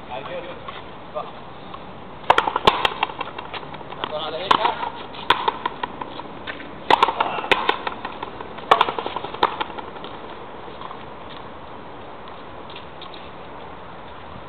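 A frontenis rally: racket strokes and the Oxone rubber ball cracking off the concrete fronton wall and court, with a short echo after each. It is an irregular run of about a dozen sharp cracks, some in quick pairs, starting about two seconds in and stopping near ten seconds.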